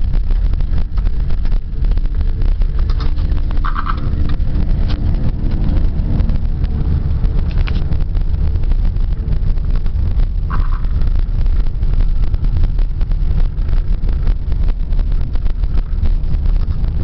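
Car interior noise while driving on snow-covered streets: a loud, steady low rumble of engine and tyres on the road. Two brief higher tones sound at about four seconds and again at about ten and a half seconds.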